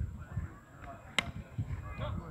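A single sharp knock a little past halfway, over a low rumble and faint distant voices.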